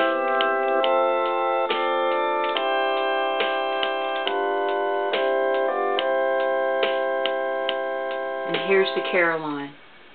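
Gulbransen DH-100 digital hymnal playing a hymn at 70 beats a minute in its pipe-organ voice: held organ chords with regular clicks along the beat. Near the end the chord slides steeply down in pitch and cuts out.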